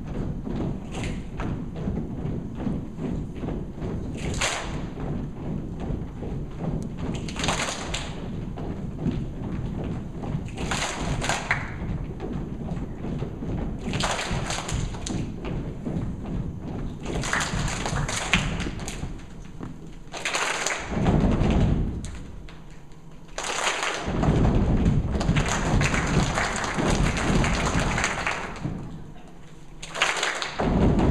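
A large group of children performing body percussion: a steady, rhythmic run of thumps from pats and stomps, with short bursts of sharper slaps or claps every few seconds. A longer stretch of massed hand clapping comes near the end.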